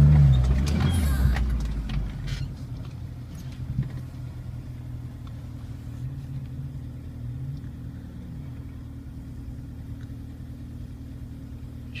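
Off-road 4x4's engine heard from inside the cabin: loud and pulling hard for the first couple of seconds, then easing off to a low, steady running hum as the vehicle rolls slowly across rough ground.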